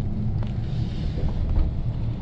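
Steady low road and engine rumble inside a moving car's cabin, with a faint click about half a second in.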